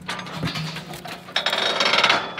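Steel Arrowquip 88 Series squeeze chute being released by its lever: clicking and knocking of the latch and bars, then a loud metallic clatter with a ringing edge about a second and a half in as the head gate opens to let the cow out.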